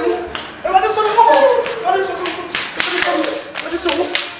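A woman's raised voice calling out without clear words, over a series of sharp slaps that come thickest in the second half.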